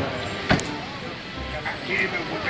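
Outdoor ambience from a phone recording: faint voices with vehicle background, broken by a single sharp knock about half a second in.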